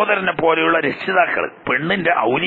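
Only speech: a man talking, in a recording cut off above about 4 kHz.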